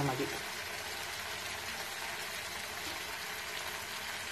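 Fish pickle masala frying in oil in a kadai, a steady sizzle.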